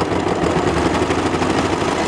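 Brother overlocker (serger) running steadily at speed, a continuous even mechanical whir as cotton fabric is fed through it.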